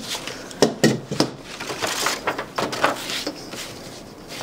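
A long steel straightedge being handled and laid down on a leather hide on a workbench: a few sharp clacks and knocks in the first second or so, then scraping and rubbing as the rule and the leather are slid into place.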